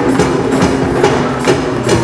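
A live band playing show music, with sharp percussive hits in a steady beat.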